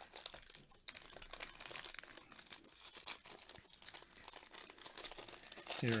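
Faint crinkling and crackling of a plastic-wrapped baseball card pack being handled in gloved hands as it is readied for tearing open, with scattered small clicks.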